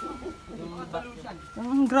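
Domestic pigeons in a loft cooing, low and soft, with a man's voice starting near the end.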